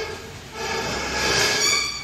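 Metal parts of a stainless steel multihead weigher scraping against each other, with a ringing squeal. A short scrape ends just at the start, and a longer one begins about half a second in and grows shriller near the end.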